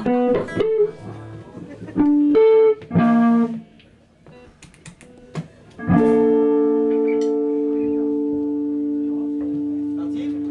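Electric guitar played live through an amplifier: a few short picked notes and chords in the first few seconds, then, about six seconds in, a chord struck and left to ring, slowly fading.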